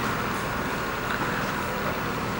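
Steady rumbling background noise filling an indoor ice rink, like ventilation or refrigeration machinery, at an even level without a beat or a melody.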